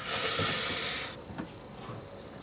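A loud hiss, about a second long, that starts suddenly and cuts off abruptly.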